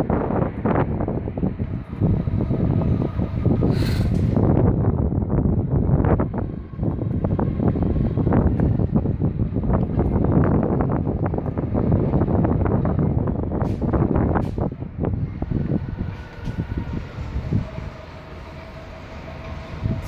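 Wind buffeting the microphone: a loud, uneven rumble that swells and dips, with a few brief clicks.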